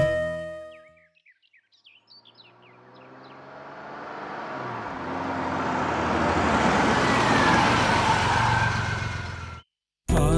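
A car drives up and pulls in, its engine and tyre noise swelling as it nears and then cutting off suddenly near the end. Background music fades out at the start, and a few short chirps come before the car is heard.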